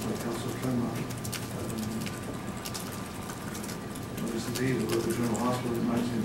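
A man's low voice talking indistinctly, with light clicks and a faint steady hum.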